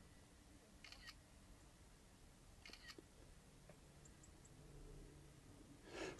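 Near silence with two faint camera-shutter clicks, about a second and about three seconds in: the drone app's shutter sound as the panorama's photos are taken.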